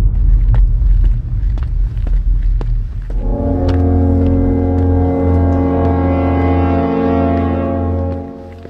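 A deep low rumble, then about three seconds in a long, loud brass-like horn blare, a dramatic 'braam' sting that is held steady for about five seconds and fades out at the end.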